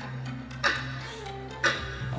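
Game-show countdown timer sound effect ticking once a second, two sharp ticks in all, over a steady low background music drone.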